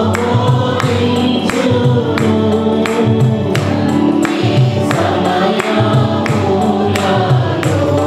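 Choir of women and men singing a Telugu Christian worship song through microphones, over electronic keyboard accompaniment with a steady percussion beat.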